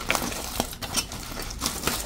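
Aluminium foil crinkling as it is peeled off a plate and crumpled in the hand, in irregular sharp crackles.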